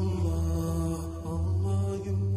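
Intro theme music of low vocal chanting, with long, steady held notes.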